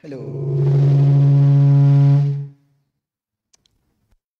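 A man's voice holding one long, steady low note for about two and a half seconds, heard as a drawn-out "hello", much louder than the talk around it.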